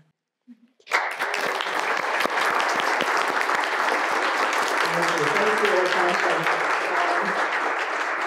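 An audience applauding. The clapping starts suddenly about a second in and holds steady.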